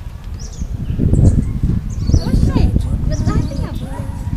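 Outdoor street ambience: an uneven low rumbling noise with indistinct voices and calls in the background.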